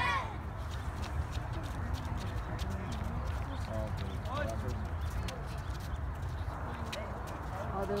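Distant voices of a group exercising outdoors, a few short calls rising and falling in pitch, over a steady low rumble, with scattered light clicks and footfalls on pavement.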